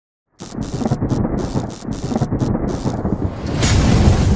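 Thunderstorm sound effect: a deep thunder rumble under a rain-like hiss starts suddenly about a third of a second in. The hiss cuts in and out, and a louder, brighter crash of thunder swells near the end.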